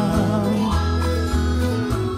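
Instrumental passage of a sertanejo-style song: nylon-string acoustic guitar playing over a steady bass line, between sung verses.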